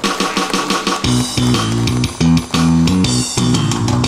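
Instrumental intro of a song's backing track played over a PA system, with bass guitar and guitar; the full band with a steady bass line comes in about a second in.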